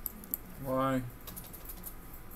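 Light clicks and taps of a computer keyboard and mouse, scattered through, with a short steady hum from a man's voice just under a second in.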